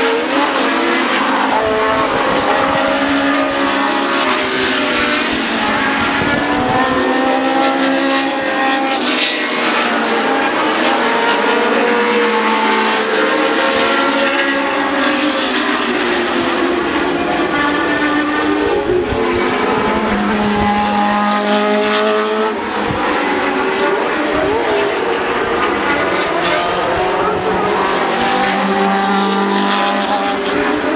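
Historic Formula One cars racing past at full throttle, several engine notes overlapping. The pitch climbs and drops as they accelerate, brake and change gear through the corners.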